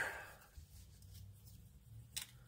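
Near silence: quiet room tone with faint handling of a plastic model kit part, a few soft ticks.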